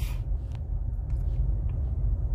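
Steady low rumble inside the cabin of an eighth-generation Honda Civic as it rolls in neutral at about 12 km/h, nearly stopped, with the engine idling.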